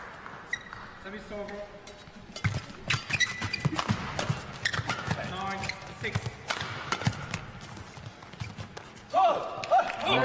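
Badminton rally: a quick run of sharp racket strikes on the shuttlecock and players' footfalls on the court, from about two and a half seconds in until near the end.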